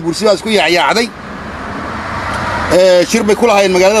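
A man talking, broken by a pause of about a second and a half filled with a rising hiss of noise, and then talking again.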